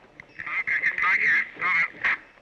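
Thin, garbled voice over a two-way radio, too distorted to make out.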